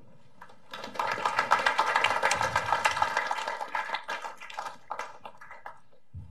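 Applause from a small audience and panel: dense hand clapping that starts about a second in, is loudest early on its course, and thins out near the end.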